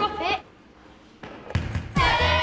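A child's voice explaining a game breaks off just after the start. After a short quiet lull, a low hum and a few short thuds begin in the last half-second.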